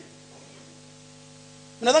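Steady electrical mains hum: a low buzz made of several fixed tones over faint hiss, heard during a pause in speech. A man's voice starts again near the end.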